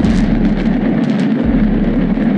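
A high-rise concrete housing-project tower coming down in a demolition: a loud, steady rumble of collapsing concrete and falling debris.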